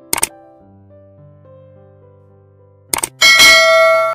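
Sound effects of an animated subscribe button: a quick double click at the start, another double click about three seconds in, then a loud bright bell chime ringing for about a second as the notification bell is set. Soft background music plays under it.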